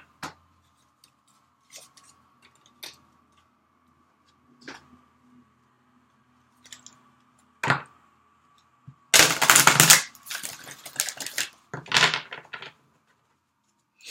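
A deck of oracle cards being handled: a few light clicks and taps as the cards come out of their box, then a dense rustle of shuffling from about nine seconds in, with another burst about three seconds later.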